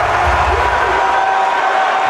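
Home arena crowd cheering loudly and steadily just after a made basket with a foul drawn.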